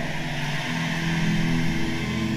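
Soft, steady keyboard pad chords holding sustained notes, changing chord about half a second in.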